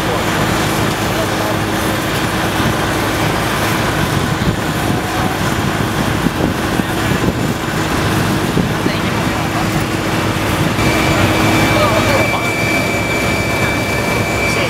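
Steady engine and machinery noise on an airport apron, with idling vehicles and aircraft, and a hum that runs through most of it. A thin high whine starts about three-quarters of the way through.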